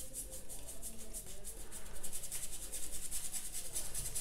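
Paintbrush bristles scrubbing on watercolour paper in quick back-and-forth strokes, several a second, blending wet paint.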